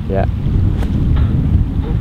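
Wind buffeting the microphone, a loud steady low rumble. About a second in, a short swish of a golf iron swung through the air in a practice swing, without striking the ball.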